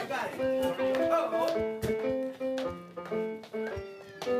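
Giant walk-on floor piano played by stepping on its keys: a run of single held notes at changing pitches, a few a second, picking out a simple tune. Each note starts with the thud of a foot landing on a key.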